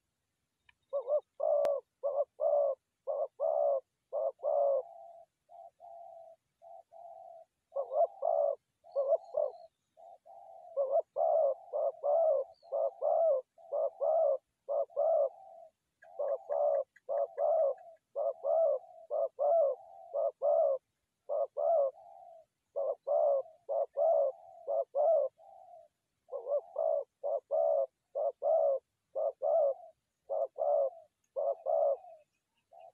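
Spotted dove cooing: runs of short, evenly spaced coos, about two a second, broken by softer drawn-out coos.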